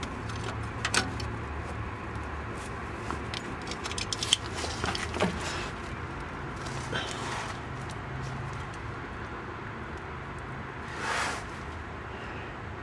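Scattered metal clicks and scrapes of a band-type oil filter wrench loosening a spin-on oil filter, which is then turned off by hand. A steady low hum runs underneath, and a short rush of noise comes near the end.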